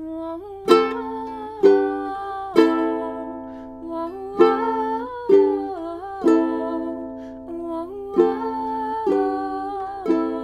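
Ukulele strummed in chords: a strong strum about once a second, in groups of three with a short pause between groups, with the chords ringing on between strums.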